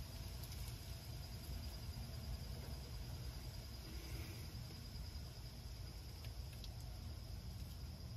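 Faint steady insect chirring, a thin high continuous trill over a low background rumble.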